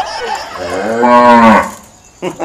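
A cow mooing once, a single call about a second long that rises at the start and drops away at the end.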